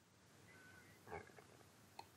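Near silence: room tone, with one faint brief sound a little after a second in.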